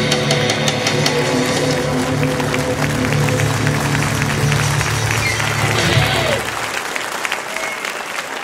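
A live rock band with electric guitar ends a song: sustained music stops about six seconds in, and audience applause carries on after it.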